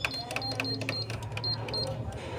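Canon MF8280Cw control panel beeping at each key press: about seven short, high beeps with light button clicks as the cursor steps across the on-screen keyboard.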